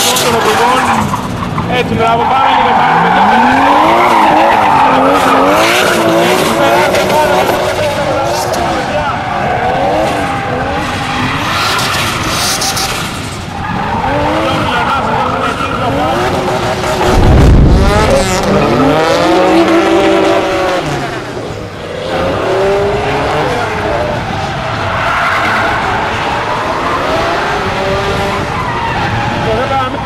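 Drift car's engine revving up and down over and over, with tyres squealing and skidding as the car slides through the corners. About halfway through there is a brief loud low rumble, the loudest moment.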